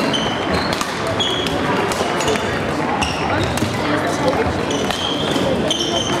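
Busy badminton hall: many voices chattering in the background, with short shoe squeaks on the wooden court floor and racket strikes on shuttlecocks from the courts.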